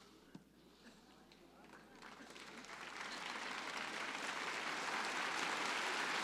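Audience applause that swells gradually from near silence starting about two seconds in, growing steadily louder and then holding.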